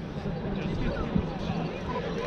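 Distant voices and a brief laugh over steady outdoor background noise, with a soft thump about a second in.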